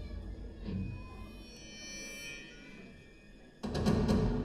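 A live rock band's music. A heavy low chord fades into a quiet stretch with faint held high tones, then the full band comes back in loudly about three and a half seconds in, with sharp drum and cymbal hits.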